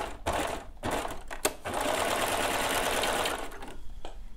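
Serger (overlocker) stitching: a few short bursts, then a steady run of about two seconds before it stops. It is sewing over a short stretch of seam to lock it so the threads will not unravel.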